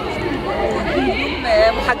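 Chatter of many people talking at once in a busy hall, with a woman's voice starting a question near the end.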